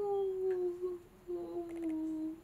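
A woman humming a thoughtful closed-mouth "mmm" in two held notes: the first slowly falling, then after a short break a second, slightly lower steady one.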